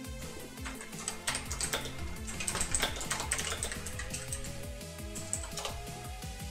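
Computer keyboard keys clicking in a quick, irregular run, mostly in the first half, with a few more clicks near the end, over background music with a steady beat.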